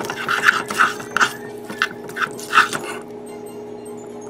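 A spoon stirring and scraping mac and cheese shells in a saucepan, in short strokes several times a second for the first three seconds, then fewer. A steady hum runs underneath.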